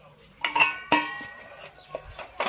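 Stainless steel dishes and serving utensils clanking together: two sharp metallic clanks about half a second apart, each ringing on briefly, then a lighter knock near the end.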